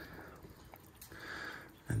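Quiet outdoor background with a few faint, soft clicks as a hand picks lime wedges off a thin plastic cutting board. A man's voice begins a word at the very end.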